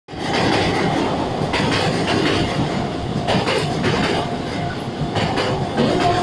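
Train noise at a station platform: a steady rumble with several clacks of wheels over rail joints, and a faint steady whine in the second half.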